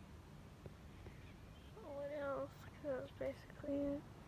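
A high-pitched voice making a few short vocal sounds in the second half, the last one a held note, over a low steady rumble.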